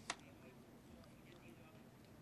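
Near silence: faint room tone through the microphone, with one brief faint click right at the start.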